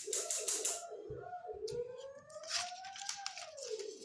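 Crinkling and clattering of handled plastic food packaging, with a long pitched sound that rises slowly and then falls away over the last two seconds.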